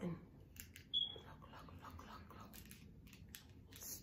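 Faint clicks of a small plastic Bluetooth shutter remote being handled and its button pressed while it is being paired to a phone, with a short high beep about a second in.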